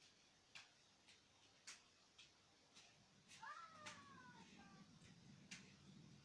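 Faint light taps about twice a second, then a cat meows once, falling in pitch, about three and a half seconds in. A low hum comes in at about the same time.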